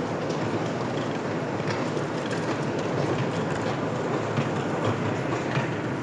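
Cottonseed oil mill machinery running steadily: a chain conveyor drags cottonseed along a floor trench with a continuous metallic clatter and small irregular clicks.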